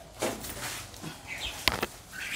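Bare branches of a potted yellow apricot blossom tree rustling as it is shifted by hand, with a sharp knock about three-quarters of the way through. A short bird chirp is heard just before the knock.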